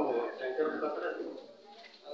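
A man speaking into a hand microphone, his voice dying away about a second and a half in.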